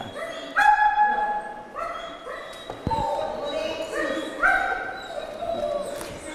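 A dog giving a string of about eight high-pitched yelping cries, each about half a second long. There is a single thump about three seconds in.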